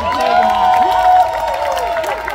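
Crowd cheering and clapping, with children's high voices holding long shouts over scattered claps.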